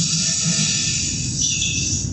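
Hissing and fizzing of calcium hydride reacting violently with drops of water and giving off hydrogen gas, played from a demonstration video over a lecture hall's speakers.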